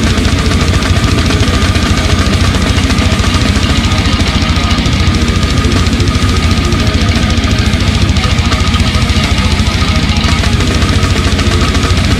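Extreme metal music: a dense wall of distorted sound over a very fast, unbroken pulse of bass drum strokes.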